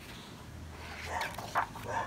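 A dog yipping a few short times in the second half, over a low steady hum.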